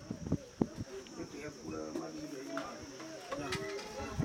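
Quiet overlapping conversation of several people, with a couple of sharp clicks in the first second.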